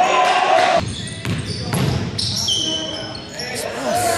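Basketball being bounced on a hardwood gym floor during play, with players' voices in a large, echoing gym.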